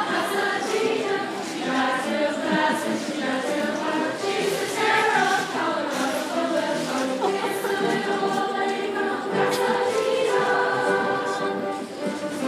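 High school chorus singing, with held notes that move from pitch to pitch.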